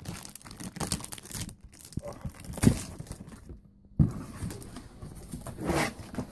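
A cardboard shipping box being opened by hand: cardboard flaps rustling and scraping, and plastic bubble wrap crinkling. A few sharper knocks stand out, and there is a brief lull a little past halfway.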